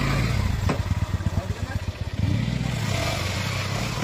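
Small motorcycle engine running at low revs, pulsing unevenly with the throttle for the first couple of seconds, then running steadier. A sharp click comes in under a second in.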